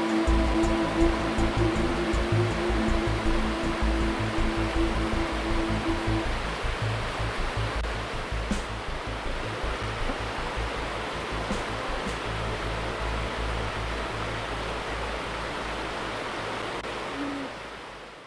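Rushing water of a rocky river, with background music over it. The held music notes stop about six seconds in, and the sound fades out at the very end.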